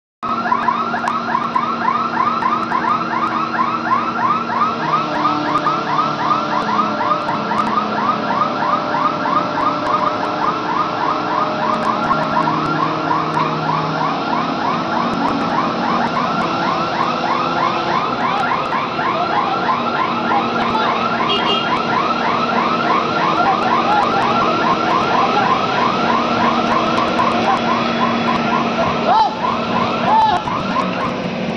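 Warbling electronic warning alarm repeating rapidly, about four or five chirps a second, over the steady running of a truck crane's engine during a lift. The alarm weakens after about twenty seconds.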